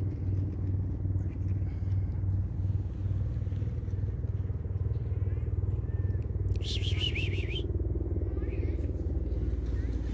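Steady low engine-like rumble with a pulsing hum. About seven seconds in comes a brief high, warbling call, with fainter chirps around it.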